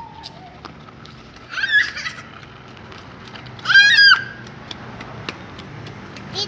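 A young child's high-pitched squeals: two short ones about two seconds apart, the second louder.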